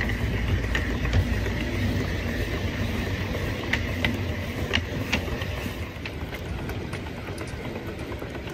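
Seven-and-a-quarter-inch gauge live-steam Avonside tank locomotive running along its track, heard from the footplate as a steady low rumble. A few sharp clicks come about halfway through.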